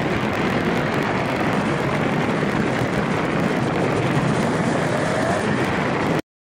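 Arctic Cat three-cylinder two-stroke snowmobile running steadily under way across lake ice, heard through heavy wind noise on the sled-mounted camera's microphone. A primary-clutch problem, which the owner diagnosed, had the engine over-revving on these passes.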